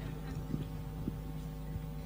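Low, steady electrical hum with a few faint ticks.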